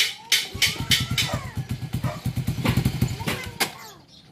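Motorcycle engine catching about half a second in and running in a quick train of firing pulses, which fade out near the end. The engine has been stalling and refusing to keep running.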